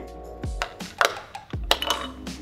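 Background music with a steady beat, and a short click about a second in as the plastic back cover of an Aqara cube is pried off with a small metal tool.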